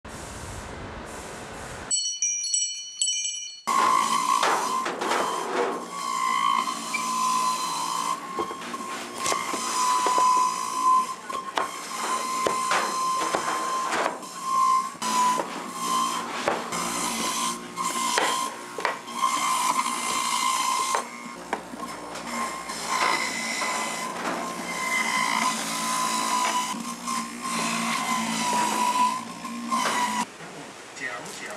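A short chime about two seconds in, then an electric juicer running with a steady high whine as carrots are pushed through it, with frequent knocks and clatter.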